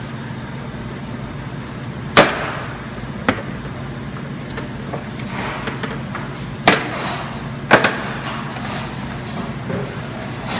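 Plastic retaining clips of a car's rear cargo-area sill trim panel snapping loose as the panel is pulled up by hand: several sharp snaps, the loudest about two seconds in, with more about a second later and two close together around seven to eight seconds.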